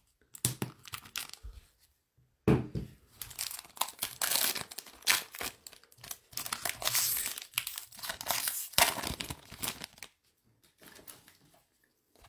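A foil trading-card pack being torn open and crinkled by hand, in a run of crackling bursts that fall away to faint sounds for the last couple of seconds.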